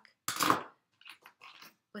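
A single short, loud cough about half a second in, followed by a few faint rustles.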